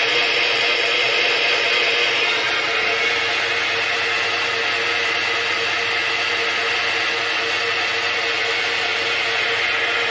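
Home-built milling machine running with its Z-axis power feed engaged, driving the knee's jack screw: a steady whir with a faint hum under it.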